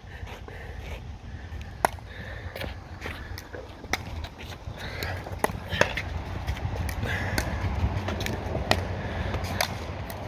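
Pickleball play: sharp pops of paddles striking the plastic ball and the ball bouncing on the hard court, about half a dozen at uneven intervals, over a low steady rumble.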